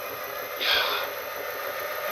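Three-phase electric motor run by a variable frequency drive, spinning unloaded at about 900 RPM with its pump decoupled: a steady running noise with a thin, steady high tone above it. A short breathy hiss comes about a second in.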